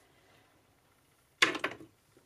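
Small glass essential-oil bottles set down on a wooden curio shelf: a quick cluster of three or four clinks and knocks about a second and a half in.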